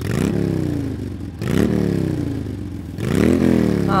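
An engine revved three times, each rev climbing quickly and then dying away slowly.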